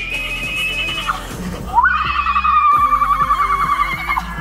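A woman screaming while going down a slide, in long, high-pitched, quickly wavering screams. One fades out about a second in; another starts just before two seconds and holds to the end.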